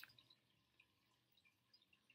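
Near silence: a short click right at the start, then only a few faint, scattered ticks from a stack of paper cards being leafed through by hand.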